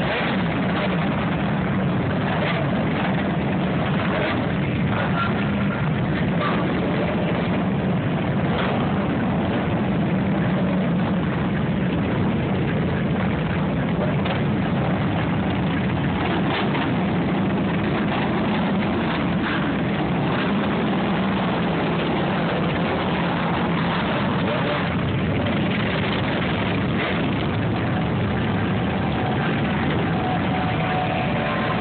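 A large group of motorcycles, mostly cruisers with a few sport bikes, idling and pulling away slowly in a pack. Their engines merge into one steady, continuous low drone.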